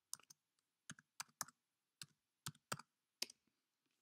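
Fingers tapping and handling the recording device close to its microphone: about nine small, sharp clicks and taps at an irregular pace.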